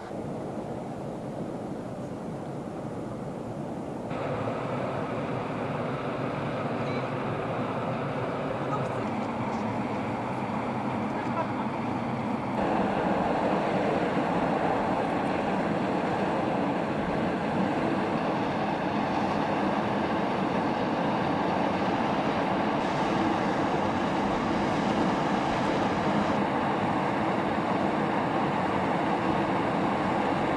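Steady rushing noise of volcanic fumaroles venting steam. It steps up in level twice and is loudest through the second half.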